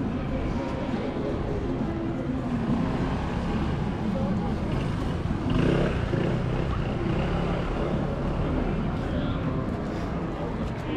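Busy pedestrian shopping-street ambience: scattered talk of passers-by over a steady low rumble of city traffic, briefly louder a little past the middle.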